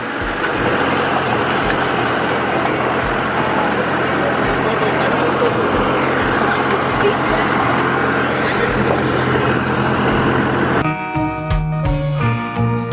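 Open hay wagon riding along: a dense, steady noise of wind on the microphone and the wagon's rumble, with a low hum from the towing vehicle. Guitar music comes in near the end.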